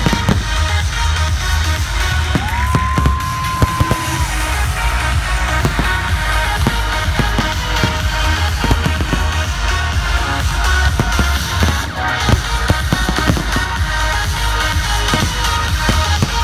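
Fireworks bursting and crackling in rapid, irregular bangs over loud electronic dance music with a heavy bass beat from a festival sound system. A held high tone sounds for about a second and a half near the start.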